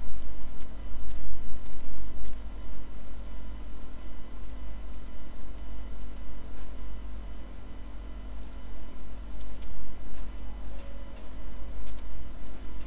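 A pencil sketching on paper in short, faint scratchy strokes, over a steady low hum.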